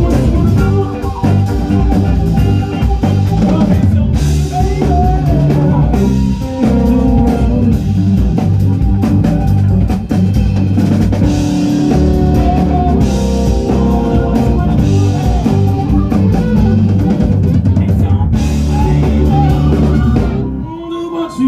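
Live band playing an instrumental passage at a blues jam: drum kit keeping a steady beat under electric guitars, bass and electric keyboard, with a trumpet playing over them.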